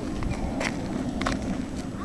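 Footsteps of a person walking at a steady pace, three steps in the two seconds, over a steady low background noise.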